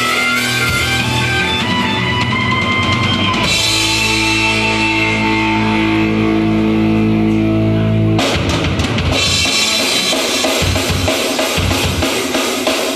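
Hard rock band playing live with distorted electric guitars, bass and drum kit. A guitar line over the drums gives way at about three and a half seconds to a long held, ringing chord. At about eight seconds the full band with pounding drums comes back in.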